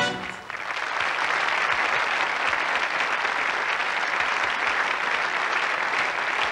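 Audience applause: the band's last note stops at the very start, and steady clapping from a large crowd rises within the first second and carries on.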